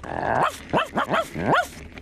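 Cartoon robot character's dog-like barking: a quick run of about half a dozen short barks, each rising and falling in pitch.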